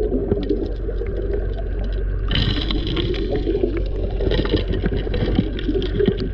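Underwater sound of a 4-inch gold suction dredge at work: the steady hum of its engine and pump carried through the water, with rapid clicks and knocks of gravel and rocks being drawn into the suction nozzle. The diver's exhaled air bubbles out of the regulator in two hissing bursts, a little after two seconds in and again around four and a half seconds.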